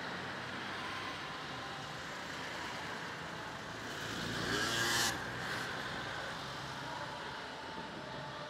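A motor vehicle passing along the street over a steady town background. It swells about halfway through, its pitch rising and then falling, and cuts off suddenly.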